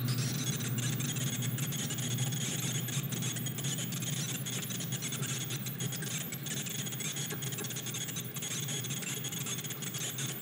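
Steady electronic drone from analog modular synthesizers: a low hum under high, hissing noise bands, with a fine crackle running through it.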